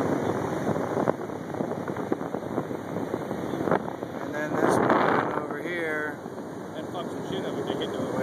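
Wind blowing across a phone's microphone: a steady rushing noise that swells louder about halfway through. A person's voice is heard briefly near the end.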